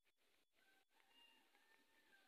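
A faint, drawn-out cat meow: one call of a little over a second, starting about half a second in and tailing off near the end.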